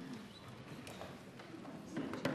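Quiet room tone of a large chamber, with a few scattered light taps and clicks and a faint murmur.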